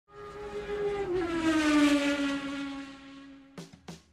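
A car engine passing by at speed: its note swells, falls in pitch as it goes past, and fades away. Two short clicks follow near the end.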